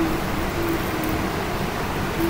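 Steady background noise with a faint hum that breaks off and comes back.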